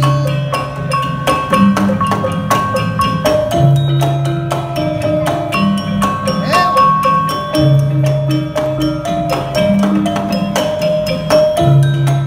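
Traditional Malay percussion ensemble playing a row of small kettle gongs in a rack, struck in quick, even strokes that make a ringing, interlocking melody over deeper sustained notes.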